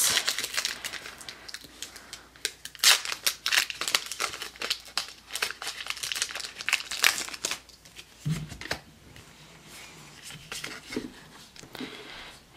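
Foil wrapper of a Pokémon XY Flashfire booster pack crinkling as it is handled and torn open by hand: a dense run of crackles that thins out after about eight seconds.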